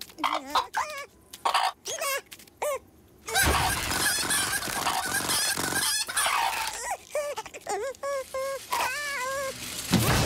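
Cartoon hens squawking and clucking in short separate calls, then a loud, noisy scramble of commotion from about three seconds in, and a quick run of clucking calls near the end.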